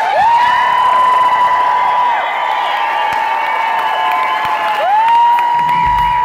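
Concert crowd cheering and applauding just after a rock song ends, with several long high calls that glide up and then hold steady, overlapping one another.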